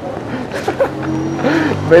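An engine running with a steady low hum that comes in about a second in, under people talking.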